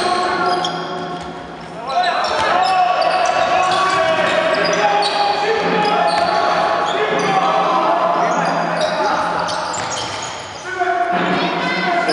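Basketball game play in a gym: the ball bouncing on the wooden floor, shoes squeaking and players calling out, echoing in the large hall.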